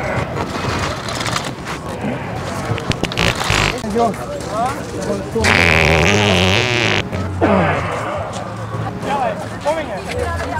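A loud, wet fart noise lasting about a second and a half, a little past the middle.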